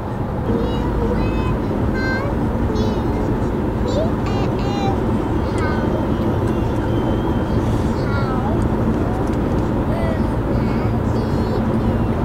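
Steady road and engine rumble inside a moving car's cabin, with a small child's high voice chattering intermittently over it.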